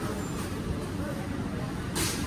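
Steady background din of a busy market hall: a low rumble with faint voices.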